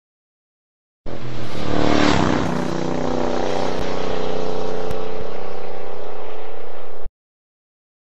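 A vehicle engine revving, then running steadily at high revs with an even, pitched note. It starts and cuts off abruptly, as an inserted sound clip would.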